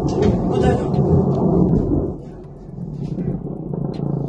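Deep rumble of a large distant explosion, dying down about two seconds in.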